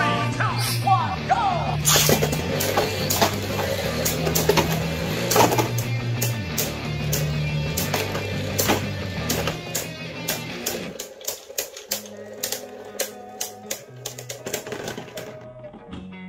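Beyblade Burst tops, an Achilles and a Fafnir, spinning and clashing in a plastic stadium, with many sharp clicks as they strike each other and the stadium wall. Background music plays throughout and drops in level about 11 seconds in.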